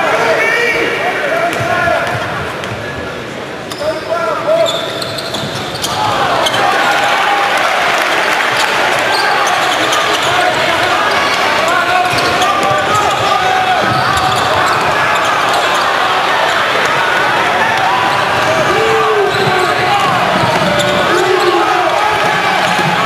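Basketball arena sound with crowd noise and voices, and a basketball bouncing on the hardwood. The crowd dips quieter about two seconds in, then grows louder and busier from about six seconds in as live play goes on.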